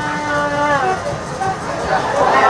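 A long drawn-out shout from one voice, held for most of a second and then falling away, over the noise of a stadium crowd celebrating a goal.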